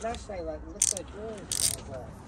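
A Matco 3/8-inch drive ratchet clicking: two short bursts of quick, high ratchet clicks, about half a second apart, under faint voices.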